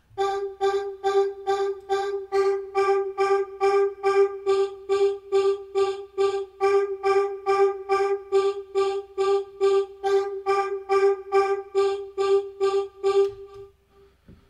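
Vocal-like synthesizer note on G from the Harmor synth, pulsing about three times a second. The fundamental stays put while its upper overtones shift in strength as the formant is moved.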